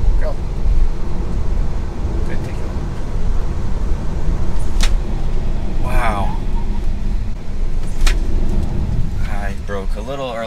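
Cabin noise of a Tesla Model 3 Performance under way on a test track: a steady low rumble of tyre and road noise as the electric car gets up to speed. A few sharp clicks sound around the middle, and a voice breaks in briefly about six seconds in.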